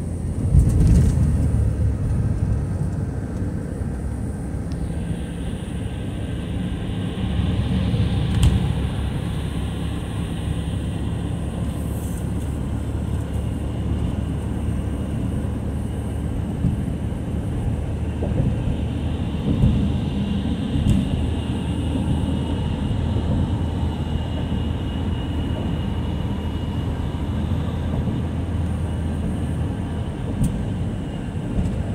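Steady road and engine noise inside a car's cabin cruising at highway speed, with brief louder bumps about a second in and again around eight seconds.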